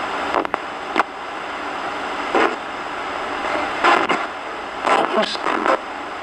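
Hacked RadioShack 20-125 portable radio sweeping stations as a ghost box: steady static hiss with sharp clicks, broken every second or so by brief fragments of broadcast voices.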